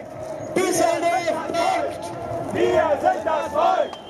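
Crowd of demonstrators shouting together, many voices overlapping, as a chant gets going and swells toward the end.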